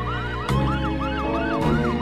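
Fire engine siren in its fast yelp, about five rising-and-falling whoops a second, changing pattern near the end, over background music.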